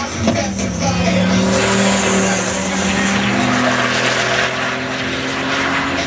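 Dodge Viper's V10 engine at full throttle, accelerating hard down a drag strip, its note rising steadily.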